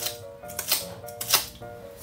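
Kitchen knife blade scraping the singed skin of a pig's trotter in several short, sharp strokes, taking off dead skin and calluses, over light background music.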